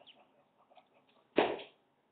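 A single short, loud vocal sound from a man about a second and a half in, rising sharply and then fading; the rest is faint room sound.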